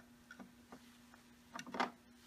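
Slide carrier being hung on a linear slide stainer's loading station: a few light plastic clicks and taps, the loudest two close together near the end. A faint steady hum runs underneath.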